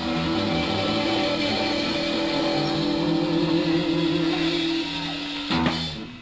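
Live electric blues-rock band holding out the last chord of a song, the electric guitar sustaining with a wavering vibrato over bass and drums. The band closes it with one final hit about half a second before the end.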